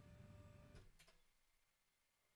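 Very faint whine of a standing desk's electric lift motor lowering the desk, a steady tone that stops with a click just under a second in, then near silence.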